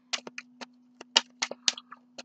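A deck of oracle cards being handled and shuffled: irregular sharp clicks and taps, about ten in two seconds, over a steady low hum.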